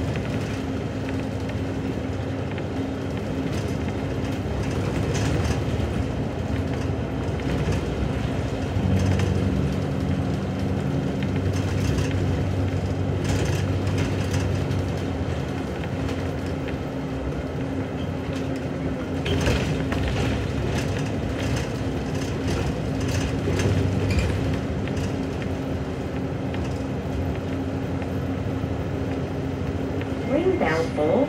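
Inside a moving city bus: the engine and drivetrain hum steadily under a constant tone, swelling under load about a third of the way in and again later, with scattered rattles from the bus's fittings.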